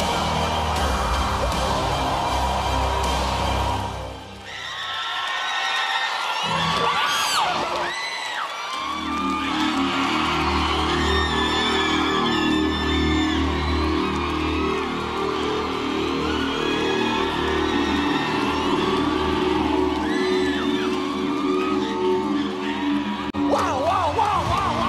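Dramatic backing music that drops away about four seconds in, followed by an audience screaming and whooping over music that comes back and holds, through to cheering at the end of a dangerous acrobatic balancing act.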